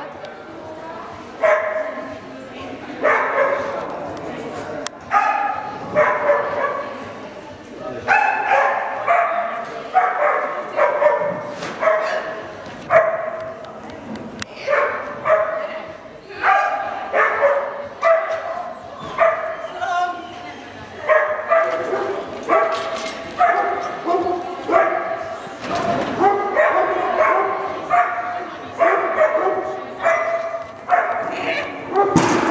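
A small dog barking over and over as it runs an agility course: short, high barks coming about once or twice a second.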